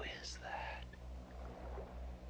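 A brief whisper in the first second, over a low, pulsing hum.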